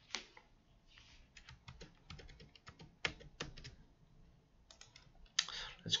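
Light, scattered clicking of a computer keyboard, a quick run of taps with a couple of louder ones a little after three seconds in.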